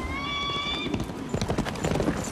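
A falcon's single long screech, rising slightly in pitch and lasting under a second. About a second in it gives way to a quick, irregular clatter of horses' hooves.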